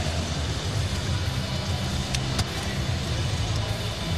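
Steady low rumble of arena background noise, with two faint clicks a little past halfway.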